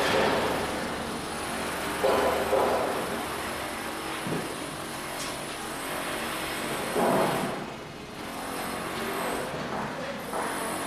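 A steady machine-like drone, the hum of a virtual factory's machinery, with a few louder swells about two and seven seconds in.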